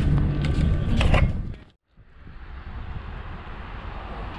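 Clicking and rattling up close from handling an electric scooter's handlebar, over a steady low hum. It cuts off abruptly a little under two seconds in, and after a brief gap a fainter steady outdoor noise follows.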